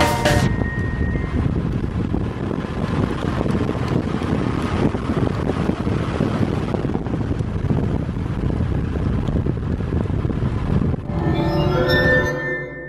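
Kawasaki W800 air-cooled parallel-twin running at road speed, its exhaust mixed with wind rushing over the microphone. Music takes over about a second before the end.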